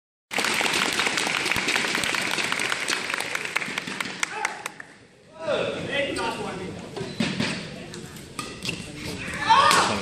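Spectators in a large gym applauding and cheering a won point. The clapping dies down after about five seconds into crowd chatter and murmuring voices.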